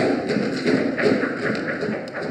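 Scattered applause, a small number of people clapping irregularly.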